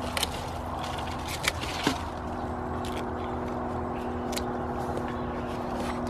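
Secateurs cutting through a green pumpkin stalk: a few short sharp clicks and snips, the clearest near the start and around one and a half to two seconds in. Under them runs a steady, even machine hum like a distant engine.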